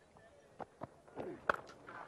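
Quiet open-air stadium ambience with a few faint knocks, then a sharp crack about one and a half seconds in: a cricket bat striking the ball on a pull shot.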